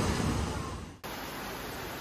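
Rushing water of a shallow rocky stream, fading out over the first second. Then steady rain hiss.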